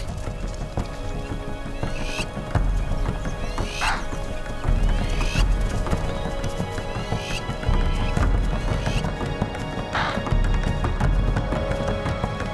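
Hoofbeats of impala running flat out, over a background music score.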